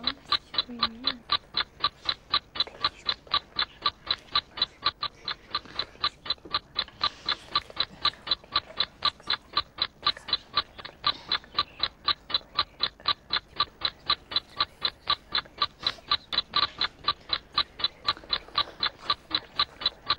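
Countdown ticking-clock sound effect: a steady, even tick of about four a second, timing a one-minute answer period.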